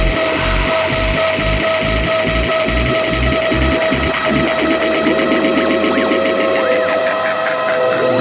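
Hardstyle electronic dance music played by DJs: a steady kick drum for the first half, then the kick drops out and a build-up starts, with a quickening roll and rising sweeps.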